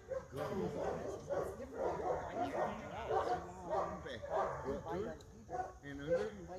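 Seven-month-old Airedale Terrier making a run of short, pitched cries and barks while gripping and tugging in bite work with a decoy.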